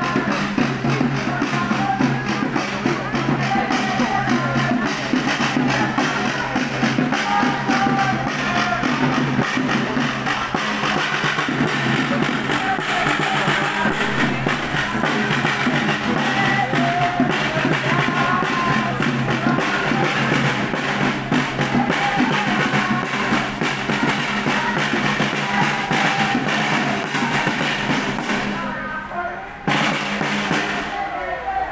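Snare drum beaten in a steady rhythm by a marcher in a walking protest crowd, with music and the crowd's voices and chatter mixed in over a steady low drone.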